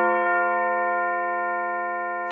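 Bell-like metallic ring left by a single strike, its many steady tones slowly fading.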